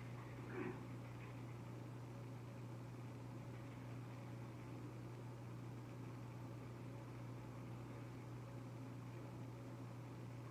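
Quiet room tone: a steady low hum under faint hiss, with one brief faint sound about half a second in.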